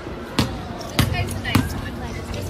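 A basketball being dribbled on concrete: three sharp bounces, a little over half a second apart.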